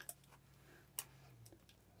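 Near silence with one small sharp click about a second in and a couple of faint ticks just after. The click comes from the sixth-scale figure's plastic arm joint and armor pieces as the arm is swung forward at the shoulder.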